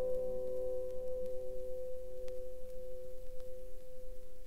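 Acoustic steel-string guitar's last chord ringing out: the higher notes die away early and one middle note lingers on, the close of a solo guitar piece.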